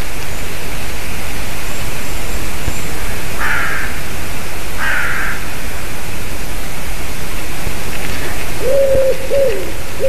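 Crows and jays calling: two short, harsh calls about three and a half and five seconds in, then a run of lower calls with falling ends from about nine seconds. A steady hiss underlies them.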